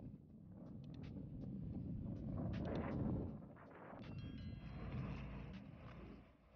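Inline skate wheels rolling over city pavement: a steady low rumble with scattered clicks from cracks and joints, swelling about two to three seconds in, with wind on the microphone. A brief high ringing tone sounds about four seconds in.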